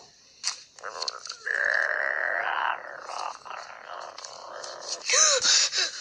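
A young voice making a raspy, breathy growl for about a second and a half, trailing off into quieter rasping, then a short high vocal cry near the end.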